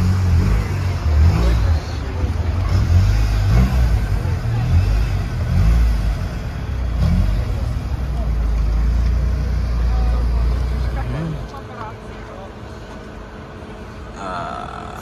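Volkswagen Golf Mk3's engine running with a deep rumble as the car is driven slowly into a parking spot, the revs rising and falling a few times. The engine then cuts off about three seconds before the end.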